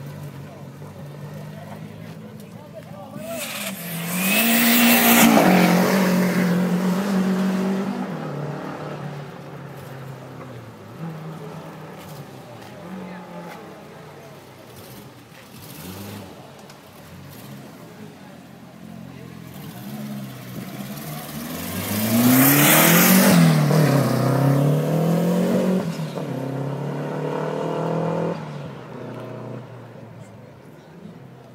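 Renault 5 GT Turbo four-cylinder turbo engines revving hard as two cars accelerate past, the first about four seconds in and the second just after twenty seconds. The engine note climbs and drops several times as each car drives by. Voices and engine sound carry on more quietly between the two passes.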